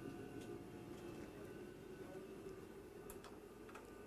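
Faint, steady hum of the space station module's ventilation fans and equipment, several fixed tones under it, with a few faint ticks.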